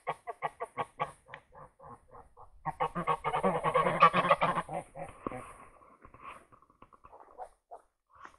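Domestic geese honking: a quick run of short honks, then a louder, denser burst of honking about three seconds in that tails off after about five seconds.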